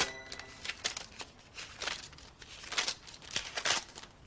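Paper banknotes rustling and crinkling as they are leafed through and counted by hand: a string of short, irregular crackles, the loudest in the second half.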